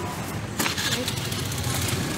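Busy market background: a motor engine running nearby under the chatter of the crowd, with a short rush of noise a little over half a second in.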